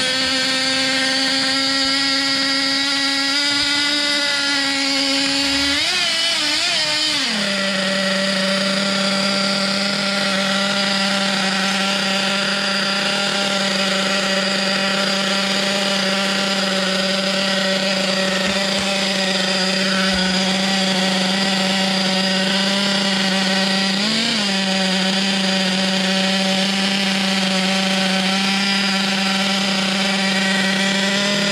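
Picco nitro glow engine of a Serpent Cobra 4WD buggy idling on its first run-up, the glow igniter still on the plug. About six seconds in its pitch wavers a few times and drops to a lower, steady idle; one more brief waver comes near 24 seconds.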